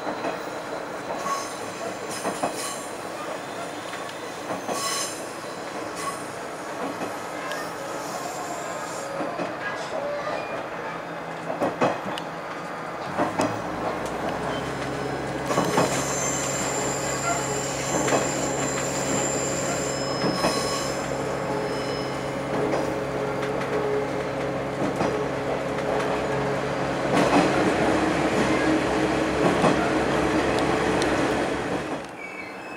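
Diesel railcar running along the line, heard from inside the car: clicks of the wheels over rail joints, the engine's steady hum growing louder about halfway through, and a high wheel squeal for a few seconds on a curve.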